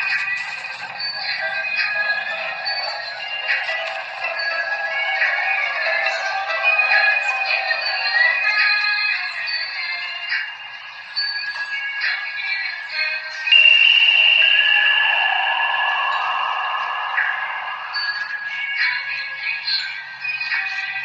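A song with a sung vocal, thin-sounding with almost no bass. About two-thirds of the way through, one long high note is held for several seconds.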